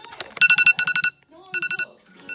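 iPhone alarm ringing, a high electronic tone beeping in quick bursts of about four beeps, three bursts in two seconds.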